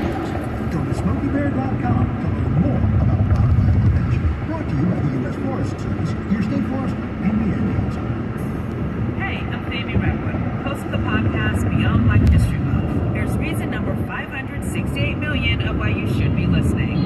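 Car radio playing inside a moving car's cabin: a voice with some music, over steady road noise.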